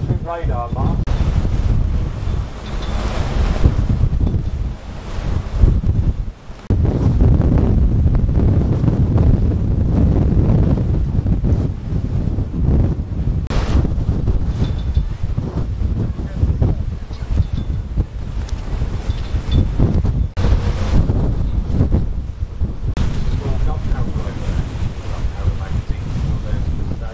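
Strong wind buffeting the microphone on the deck of a moving harbour tour boat, over the rush of water from the boat's wake.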